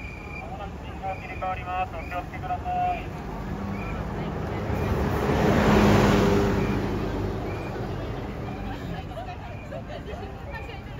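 A bus driving past at close range: its engine and tyre noise swell to a peak about six seconds in, then fade as it moves away.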